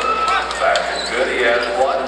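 A basketball bouncing a few times on a hardwood court, under the talk of people in the gym.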